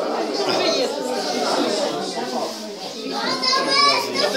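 Many people talking at once in a room, a babble of overlapping conversation. One higher voice stands out near the end.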